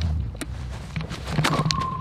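A rubber fetch ball kicked across grass: a sharp thud of the kick about one and a half seconds in, over a low rumble on the microphone. Right after the kick a steady high tone starts and holds.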